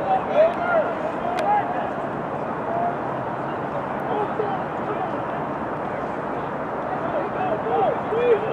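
Distant shouts and calls from rugby players and sideline spectators over a steady outdoor background noise, with a few brief raised voices in the first second or so and again near the end.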